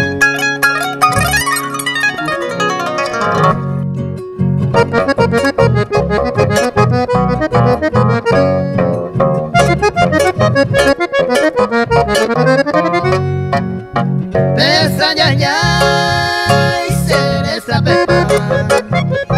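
Instrumental passage from a Paraguayan folk ensemble of Paraguayan harp, piano accordion and acoustic guitars over a steady plucked bass. Quick harp runs and plucked melody come first; the accordion takes the lead with held chords in the last few seconds.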